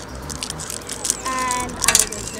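Small plastic toy packets crinkling and rustling in the hands as they are unwrapped, with wind rumbling on the microphone. A child's short held voice sound comes in over it near the end.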